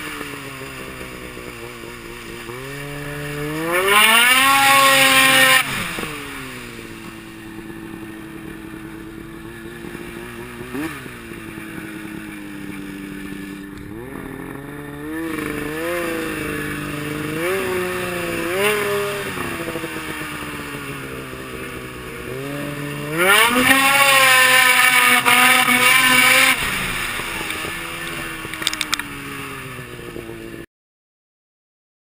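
Snowmobile engine heard from the rider's seat, opened up hard twice: its pitch climbs steeply about three seconds in and again around twenty-three seconds in, runs loud for two to three seconds each time, then falls back. In between it runs at part throttle with a few short blips of the throttle.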